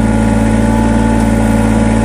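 Kubota BX2380 subcompact tractor's diesel engine idling steadily.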